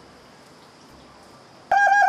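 Faint background hiss, then near the end a loud, high-pitched warbling whoop starts suddenly, its tone broken about six or seven times a second: a mock war whoop made by patting a hand over the mouth.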